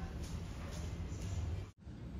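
Steady low background hum of a ship's interior, with faint soft taps over it; the sound drops out abruptly for a moment near the end.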